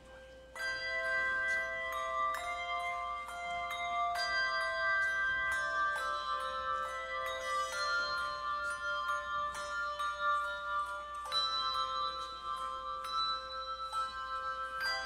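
Handbell choir playing a slow hymn: chords of several bells struck together about every two seconds, each left to ring into the next.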